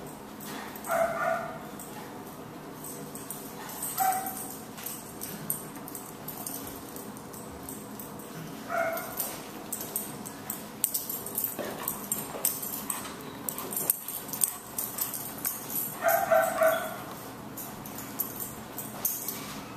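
A dog barking, four short single barks a few seconds apart, the last a little longer, over a steady low hum.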